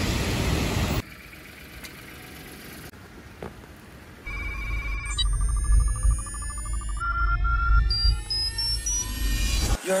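A second of steady rushing outdoor noise cuts off abruptly, followed by a quiet stretch. About four seconds in, an electronic intro riser begins: a deep rumble under a wavering high tone, many rising synth sweeps and stepped beeps climbing in pitch, building into electronic music at the end.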